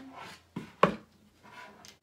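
Manual staple gun driving large staples into a wooden picture frame: a short click about half a second in, then a loud snap just under a second in. The staples are too big for the job and the fastening does not work.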